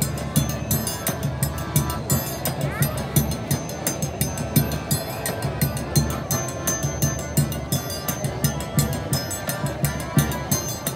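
Street forró trio playing: a zabumba bass drum beating a steady rhythm, an accordion playing the tune, and a triangle struck in quick, even strokes.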